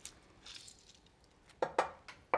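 A metal fork clinking and scraping against the bottom of a baking dish while picking lemon seeds out of the juice: a faint scrape, then two sharp clinks near the end.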